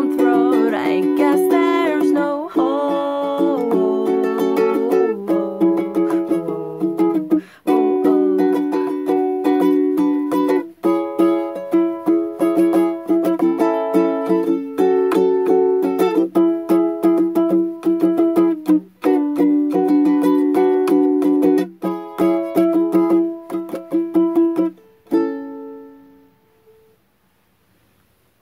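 Ukulele strummed in steady chords, with a voice singing a gliding note over the first two seconds. A final chord rings and dies away near the end.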